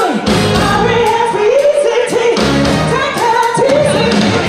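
A woman singing a soul-pop song live into a handheld microphone, with an electric band accompanying her and long held, gliding notes in the melody.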